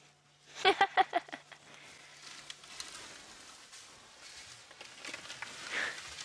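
A short run of voice pulses, like a laugh, about a second in, then faint rustling and trampling as an elephant herd takes off running through the bush.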